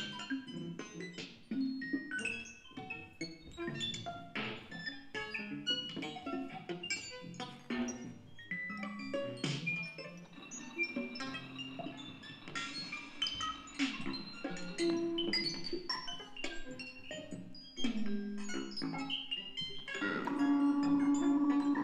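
Circuit-bent electronic instruments played live: a dense, irregular stream of short pitched electronic notes and clicks with no steady beat.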